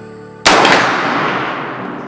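A Marlin 336 lever-action rifle in .30-30 Winchester firing a single shot about half a second in, the report echoing away over about a second and a half.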